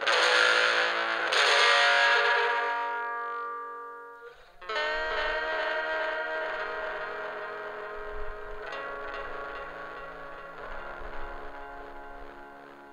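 Electric guitar played through an effects pedal: a chord struck, struck again about a second later and left ringing until it fades, then a new chord about four and a half seconds in that rings on with long sustain.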